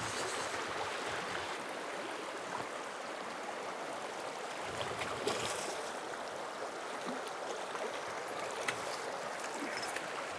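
River water running steadily over a shallow, rocky riffle, with a few small splashes or knocks about halfway through and near the end.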